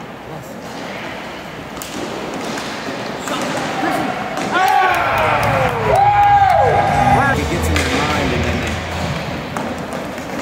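Inline hockey play on a rink: knocks of sticks and puck, with spectators' voices calling out in the middle, among them a long, falling cry.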